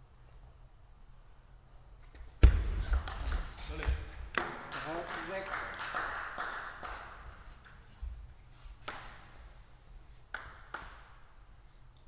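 A sudden loud thump starts a quick run of table tennis ball clicks off bats and table, followed by a voice shouting for a couple of seconds. Later come a few single ball bounces.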